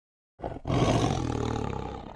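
A big cat's roar, played as a sound effect: a short first burst about half a second in, then one long roar that fades out toward the end.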